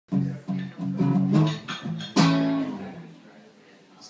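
Acoustic guitar played alone: a quick series of plucked notes and chords, then a final chord a little past two seconds in that rings out and fades away.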